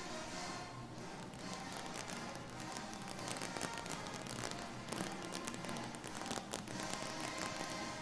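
High school marching band music: sustained pitched notes with sharp percussion hits, thickest around the middle.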